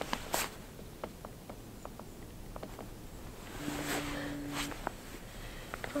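Faint rustling and scattered small clicks of handling noise, with a brief steady low hum a little past halfway.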